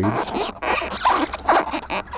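A zipper being pulled on a fabric bag: a rasping noise that breaks briefly about half a second in, then runs on in uneven strokes.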